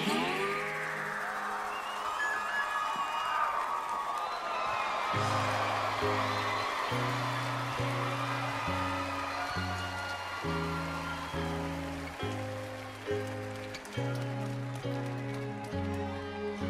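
A live band plays an instrumental intro. It opens on a noisy, wash-like stretch, and a repeating low riff comes in about five seconds in, with a new note roughly every three-quarters of a second.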